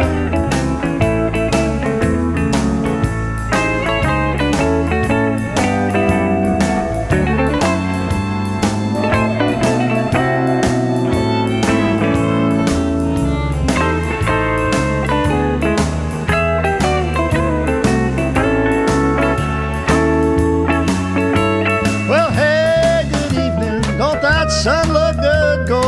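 Country-blues band playing an instrumental break with a guitar lead over a stepping bass line and a steady beat. Sliding, bending notes come in near the end.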